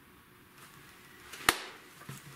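A single sharp hand clap about one and a half seconds in, after faint rustling.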